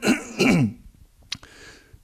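A man clearing his throat into a handheld microphone: a rough, gravelly burst in the first second, then a single short click a little after the middle.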